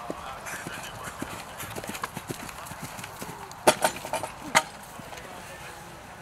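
A horse's hoofbeats on grass as it lands from a jump and canters away, a run of soft thuds in an uneven stride, with four sharp, much louder knocks close together a little under four seconds in.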